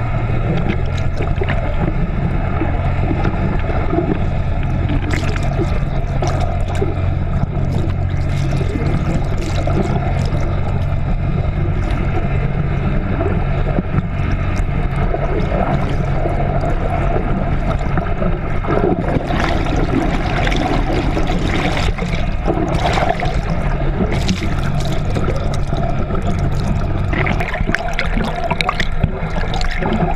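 A trolling boat's engine and propeller, heard underwater as a steady hum, with water rushing and bubbling past the towed camera and scattered small clicks.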